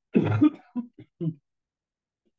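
A man's short chuckle: one louder burst followed by a few short ones, over within about a second and a half.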